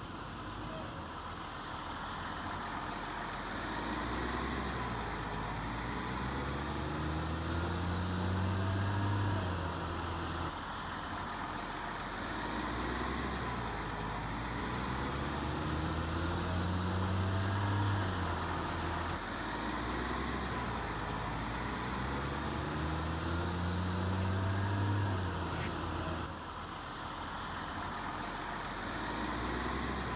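School bus engines running, their note swelling and falling away in repeated waves about every eight seconds.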